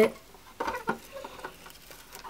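A few light, scattered taps and clicks of plastic toy horse figurines being moved down a plastic trailer ramp.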